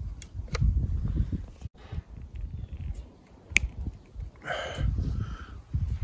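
Wind rumbling on a handheld microphone outdoors, with a few sharp handling clicks, one louder than the rest a little after three and a half seconds. Two short animal calls come about four and a half and five seconds in, and the sound drops out briefly just before two seconds in.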